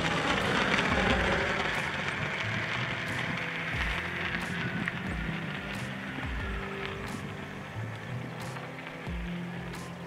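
Propeller engine of the Vanilla VA001 unmanned aircraft flying past, its pitch falling as it goes by and then fading away, under background music.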